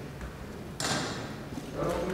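A short, crisp rustle of a large paper certificate being held up and handled, about a second in, with a fainter rustle near the end.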